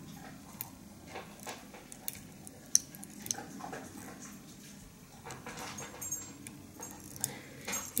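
Faint, scattered light ticks and rustles of close handling as a Sharpie marker is worked along a dubbed fly tail held in a tying vise.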